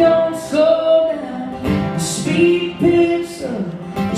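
Two acoustic guitars strummed in a live country song, with singing over them.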